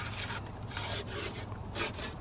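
Paper wrapper being peeled and torn off a refrigerated biscuit-dough can, in a series of short ripping rasps.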